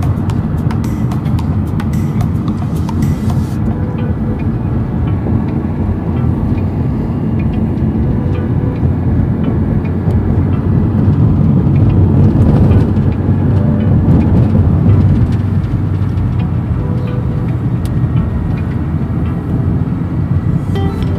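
Steady road and engine noise of a moving car heard from inside the cabin, a continuous low rumble that swells a little about two-thirds of the way through.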